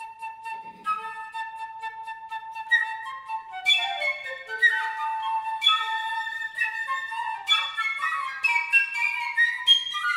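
Flute music: one long held note, then a quicker line of notes that step up and down.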